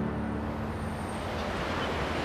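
Steady outdoor traffic noise, with the held notes of the background score fading out in the first half-second.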